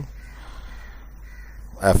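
A man's voice trails off at the start and speaks again near the end. Between the words is a pause of low, steady background hum.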